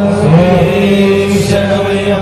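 Male voices chanting Sanskrit puja mantras in long, slowly gliding held tones.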